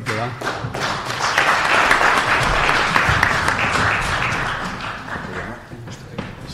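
Audience applauding, building up within the first second, then dying away near the end.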